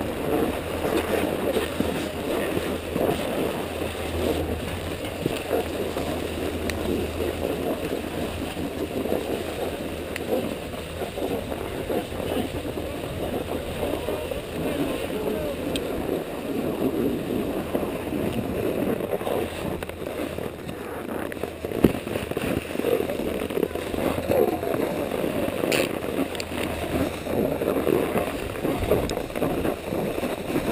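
Skis sliding and scraping over groomed, packed snow, with wind buffeting the microphone as a steady rushing noise. One sharp click about three-quarters of the way through.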